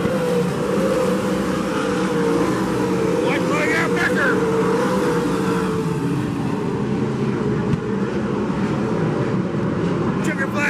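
Several sprint cars' V8 engines running flat out around a dirt oval, a steady drone whose pitch wavers up and down as the cars go through the turns.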